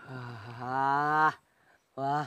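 A young man's drawn-out vocal 'aaah', rising a little in pitch and growing louder over just over a second, with a short second 'aah' starting near the end. It sounds like a relished exhale after a drag on a cigarette.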